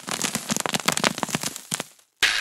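A rapid, irregular run of sharp pops and crackles, like a string of firecrackers going off, thinning out near the end.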